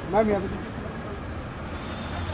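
A man's voice calls out briefly at the start, then steady low street noise with a faint traffic rumble.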